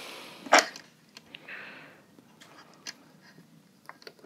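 A short, sharp sniff about half a second in, followed by a softer breath. After that come a few light clicks as test leads are handled against a plastic battery case lid.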